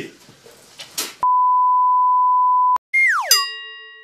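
An electronic beep: one steady pure tone held for about a second and a half, starting about a second in. After a brief gap, a falling electronic swoop settles into a ringing chord of several tones that fades away, a production-logo sound effect.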